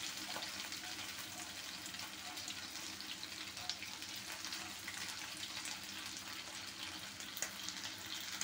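Cornflour-coated chicken pieces deep-frying in hot oil in a kadai: a steady sizzle with scattered crackles and pops, and a steel spoon stirring the pieces in the oil.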